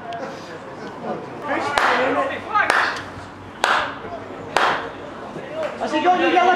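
A slow handclap: four sharp claps about a second apart, with men's voices talking over the first of them.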